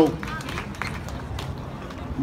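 Outdoor crowd ambience in a pause of the amplified talk: faint voices, a steady low hum and a few scattered light clicks or claps.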